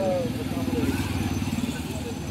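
A motorcycle engine running as it passes on the road, a rapid even putter that slowly fades.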